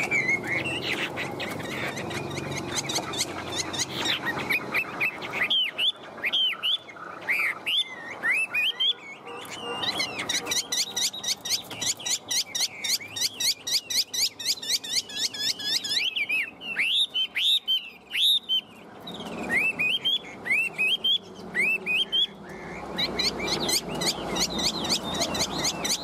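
Caged Chinese hwamei singing a long, varied song of loud slurred whistles, broken by stretches of fast repeated notes.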